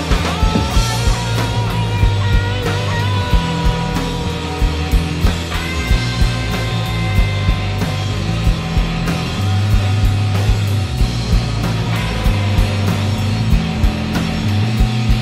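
Rock band playing an instrumental passage: electric guitars and bass guitar over a drum kit keeping a steady beat, the bass notes changing every couple of seconds.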